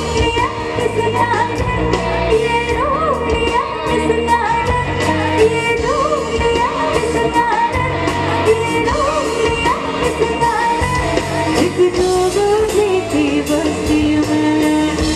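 Live Bollywood pop song: a woman sings a wavering melody into a handheld microphone over an amplified band with a steady drum beat, bass and electric guitar.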